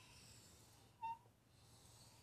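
Near silence: a dry-erase marker drawing a line on a whiteboard, with one brief squeak about a second in.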